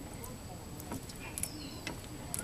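Faint, sparse clicks from the Dana 44 rear differential's spider gears as the axle is rocked back and forth by hand; the gears taking up their play show they are a little loose.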